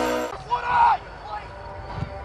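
Intro music cuts off abruptly, then a single short loud shout from a person on an outdoor football pitch, its pitch bending, followed by low open-air background.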